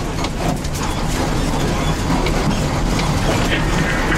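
Fire brigade vehicle driving on a rough forest dirt track, heard from inside the cab: a steady low engine and road rumble with frequent short knocks and rattles from the body and loose gear over the bumps.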